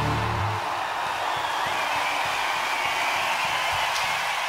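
Loud arena concert crowd cheering and screaming, as the band's last chord cuts off about half a second in.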